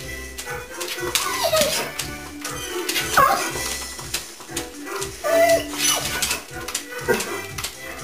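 Music with a steady beat playing through computer speakers, with a dog's short whining cries over it, four times, rising and falling in pitch.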